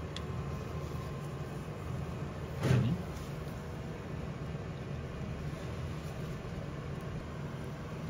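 Steady low background hum, with one short sound falling in pitch a little past a third of the way in.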